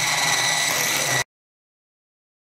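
Electric hand mixer running on low speed, its beaters mixing flour into cake batter: a steady motor hum with a high whine. It cuts off suddenly a little over a second in, leaving dead silence.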